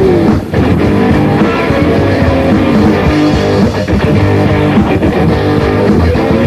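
Punk rock band playing a loud, full-band stretch of the song: electric guitar, bass and drums. The band drops out briefly about half a second in, then carries on.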